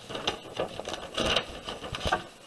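Paper pages of a spiral-bound booklet being turned over by hand, a run of rustles and crinkles that is loudest just after a second in.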